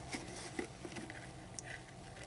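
Faint, soft scrapes and ticks of a small knife smoothing a damp paste of face powder and rubbing alcohol into a compact's pan.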